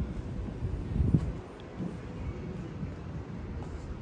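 Wind on the phone's microphone: a low, uneven rumble with a louder bump about a second in.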